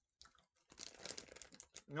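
Plastic bag of Starburst jelly beans crinkling as it is picked up and handled, a dense rustle lasting about a second in the middle, after a few faint chewing clicks near the start.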